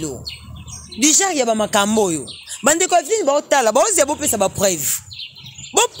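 Birds chirping in the background of an animated conversation, with quick talking that pauses briefly near the start and again near the end.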